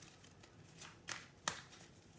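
Tarot cards being handled on a tabletop: faint rustling of cards sliding, with one sharper snap about one and a half seconds in.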